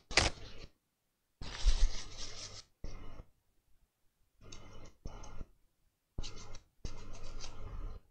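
Paper towel rubbed over a laptop's graphics chip in short scrubbing strokes, about seven with pauses between them, cleaning the chip after a hot-air reflow.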